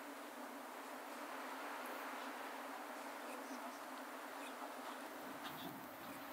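Faint, steady buzzing of insects.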